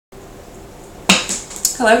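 A sharp knock on a wooden tabletop about a second in, followed by a lighter click, as a tarot deck box is handled and the cards taken out; a woman's voice begins just at the end.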